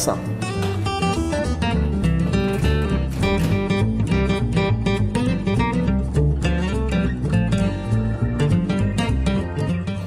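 Background music led by a plucked acoustic guitar, a quick run of notes over a steady bass.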